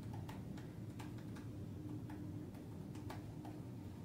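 Faint light clicks, a few a second and unevenly spaced, from a laptop's keys or touchpad being pressed.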